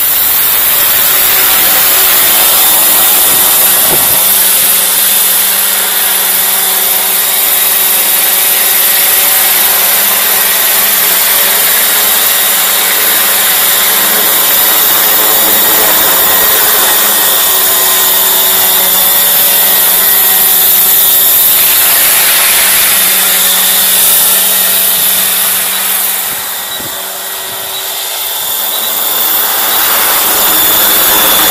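Small unmanned model helicopter with a spraying rig, its motor and rotors running at a steady high whine. The sound dips briefly near the end.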